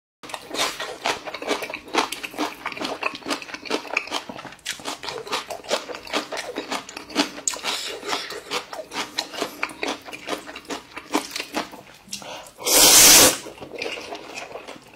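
Close-up eating sounds: quick, wet chewing and mouth smacking, then one loud slurp of noodles near the end.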